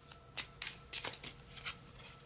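A deck of cards being handled and a card pulled out: about half a dozen short, light card snaps and rustles at uneven intervals.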